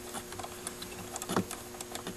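Faint, irregular small clicks and ticks as a bolt is worked loose by hand next to a car's fuse block.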